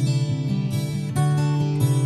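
Acoustic guitar strumming sustained chords in a song's instrumental intro, with new chords struck about a second in and again near the end.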